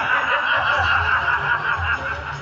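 A person close to the microphone laughing over a steady background din.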